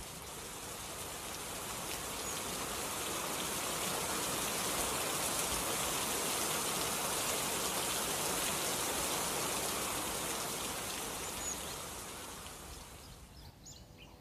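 Steady hiss of falling rain that swells in over the first few seconds and fades out near the end.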